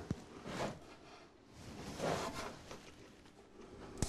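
A sharp click right at the start, then a few faint rustling handling sounds, as of an instrument or its case being taken up and moved.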